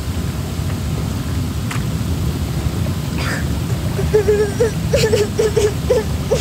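Hot tub jets churning the water with a steady, low bubbling rush. From about four seconds in, voices join with short wordless sounds.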